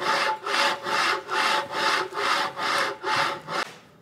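HepcoMotion GV3 V-guide carriage pushed back and forth by hand along its V-slide rail strewn with wood chippings. Its V-groove bearing wheels make a rhythmic rubbing rasp, about two to three strokes a second, stopping near the end. The wheels are clearing the debris from the track, with slight extra resistance at snagging points.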